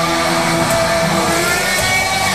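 Live rock band playing loud: distorted electric guitars holding sustained notes, with pitches sliding upward near the end.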